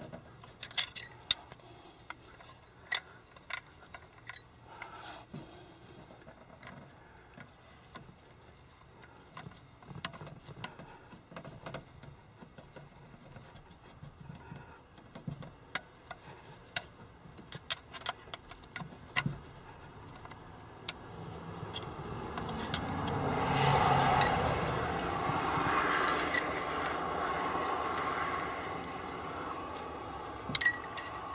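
Screwdriver tips clicking and scraping against the steel spring retainer of an NV4500 shifter stub in sporadic sharp metal taps while the spring is being compressed and twisted into place. In the last third a broad rush of noise swells up and fades away.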